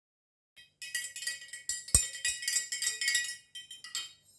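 Metal spoon stirring hot chocolate in a glass mason-jar mug: rapid clinking of the spoon against the glass, with one heavier knock about two seconds in.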